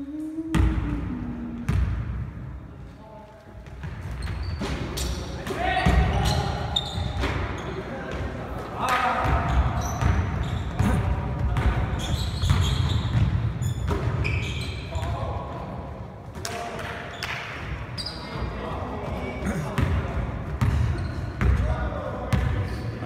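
A basketball bouncing on a hardwood gym floor with repeated sharp impacts, mixed with players' footsteps and shouts during play.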